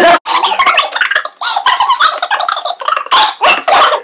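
Two women laughing loudly and helplessly, in uneven fits that break off and start again.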